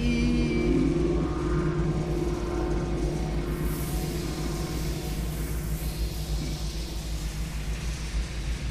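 Ambient instrumental music: held drone tones over a deep, steady rumbling low end.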